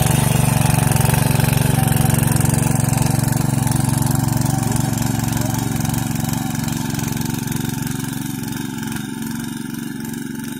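Small engine of a walk-behind power tiller running steadily under load as its rotary tines churn wet soil, growing gradually fainter from about halfway through as the tiller moves away.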